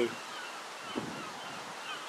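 Steady outdoor background hiss with faint bird chirps and one short, louder bird call about a second in.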